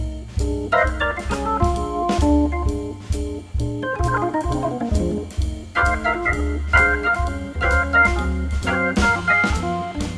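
Organ jazz: a Hammond organ plays quick lines of notes, with a fast falling run about halfway through. It sits over a low bass line and drums whose cymbal strokes keep steady time.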